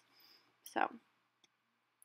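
A pause in a woman's narration: a soft breath, the single word "so", then near silence broken by one faint click.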